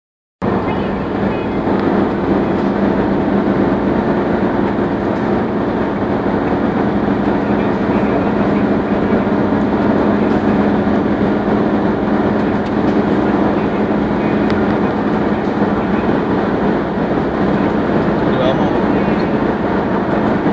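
Steady engine and tyre drone inside a car's cabin while it cruises along a highway, with a low hum that holds one pitch.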